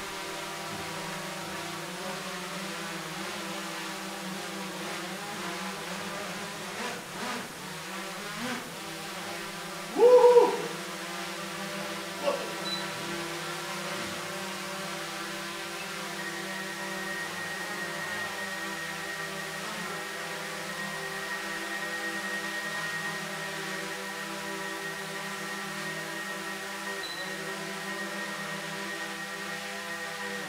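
DJI Mavic 2 Pro quadcopter hovering, its four propellers making a steady hum of several stacked tones. About ten seconds in there is a brief louder tone that rises and falls, and from about sixteen seconds on a thin, steady high tone sits over the hum.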